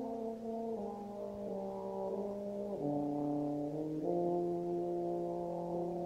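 Euphonium and symphonic band playing a slow passage of held brass chords, moving to a new chord every second or so.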